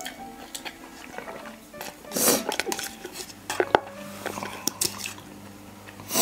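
Eating at the table: a spoon clicks against a cup of instant noodles several times. About two seconds in there is a loud, brief mouth noise from the eaters, over faint background music.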